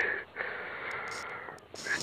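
A person breathing close to the microphone: one long, soft breath lasting about a second, in a pause between sentences.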